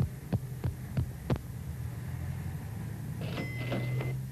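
Cartoon footstep effects: five light taps, about three a second, over a steady low hum. About three seconds in comes a short jingle with a held ringing tone, fitting a shop-door bell as the character goes into the shop.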